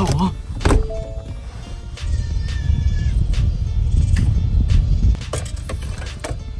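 Background music over rumbling, knocking handling noise from a phone being gripped and moved about. The rumble is heaviest from about two seconds in until just past five.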